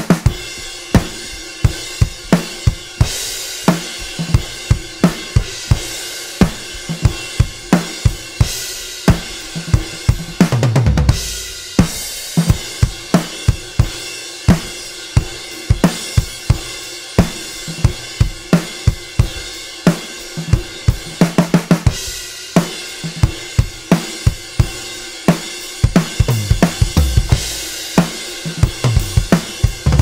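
Acoustic drum kit played in a steady groove: kick, snare, hi-hat and cymbals, recorded through close and room microphones. The groove breaks into fuller fills down the drums a few times, about a third of the way in, two-thirds in and near the end.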